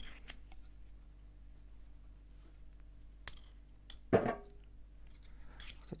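Light handling sounds of a kitchen knife and potatoes at a table: a few faint sharp clicks, with one brief louder sliding pitched sound about four seconds in.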